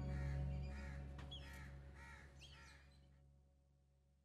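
A crow cawing about four times over a quiet music bed, with the calls and the music fading away about two seconds in.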